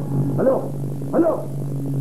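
Background music holding a steady low drone, with three short rising-and-falling yelping calls over it, about three-quarters of a second apart.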